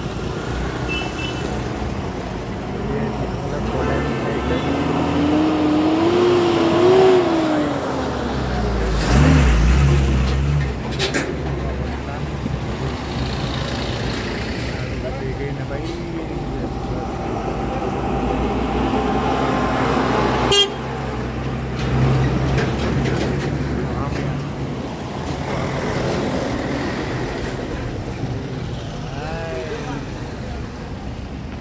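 Slow, congested road traffic: cars, trucks and scooters running past, with car horns sounding now and then. A sharp knock about twenty seconds in.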